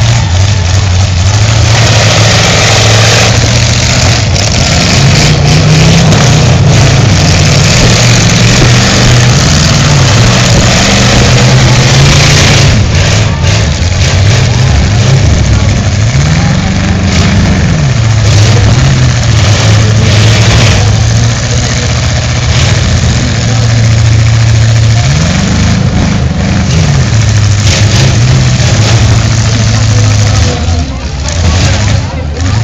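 Engines of full-size demolition derby cars running loudly, their pitch rising and falling as they are revved, with two clear revs about halfway through and near the end.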